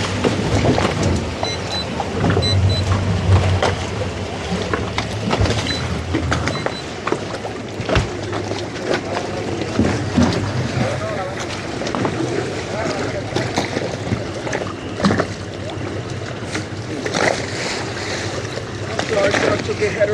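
Boat's outboard engines idling with a low steady hum, over wind and water noise, with voices talking at times.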